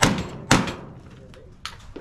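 Two gunshots from a shooter's long gun, about half a second apart, each sharp and loud with a short ringing tail.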